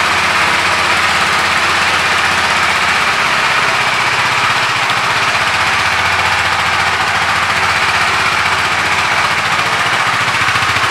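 KTM RC 390's single-cylinder engine idling steadily, a fast even pulsing exhaust beat with no revving.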